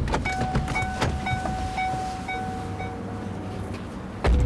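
A car door opens with a sharp click and shuts with a thump about a second later, while the car's door-open warning chime beeps rapidly, about four times a second.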